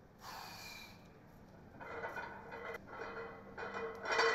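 A powerlifter's sharp, forceful breath as he braces under a heavily loaded squat bar, then further rough breathing and straining through the effort.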